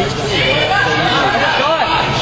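Indistinct, overlapping voices of players and onlookers calling out and chattering during an indoor soccer game.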